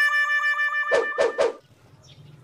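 Comedy music sting: a long held note that wavers slightly, topped by three quick hits about a quarter second apart, then it stops short.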